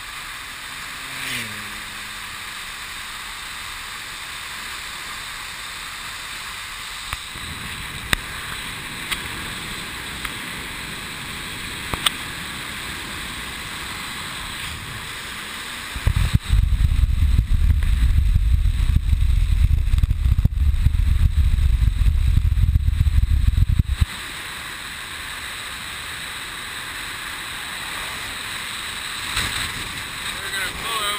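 Wind rushing over the microphone of a bike-mounted camera during a road bike descent, a steady hiss of moving air. About halfway through, heavy low wind buffeting comes in for some eight seconds as speed builds, then stops suddenly.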